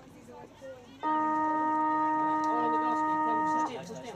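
Football ground siren sounding one loud, steady tone of several notes at once for about two and a half seconds, starting about a second in and cutting off suddenly: the siren that ends a quarter of an Australian rules football match.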